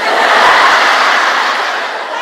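Large audience applauding and laughing, loudest in the first second and then slowly fading.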